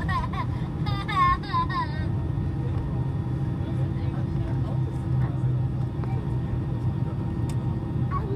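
Steady cabin drone of an airliner taxiing after landing: engines at low taxi power and cabin air, with a few constant hum tones. A person's voice speaks briefly in the first two seconds.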